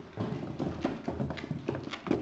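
Chinese crested dog wearing dog shoes climbing carpeted stairs: quick, irregular taps of the shoes striking the steps.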